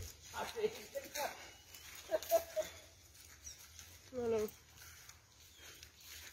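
Faint, distant talking from people nearby, in scattered short bits, with one short pitched call about four seconds in.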